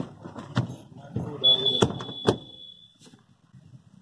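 A single steady high-pitched electronic beep lasting about a second and a half, among a few sharp clicks and brief voices.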